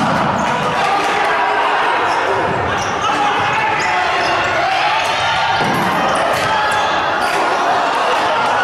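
Futsal ball being kicked and bouncing on a wooden indoor court, with players shouting, echoing around a large sports hall.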